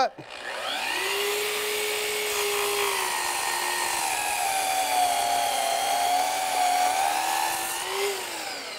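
Festool Kapex sliding compound miter saw spinning up about half a second in, then running with a steady whine as its blade cuts a miter through a wooden board. The pitch dips slightly under the load of the cut.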